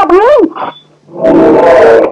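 A voice calling out in long, wavering tones that stop about half a second in, then a loud, rough, roar-like cry in the second half, heard through a worn old film soundtrack.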